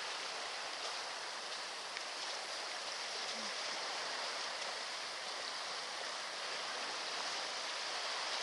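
Steady hiss of sea surf washing on the shore, even in level throughout.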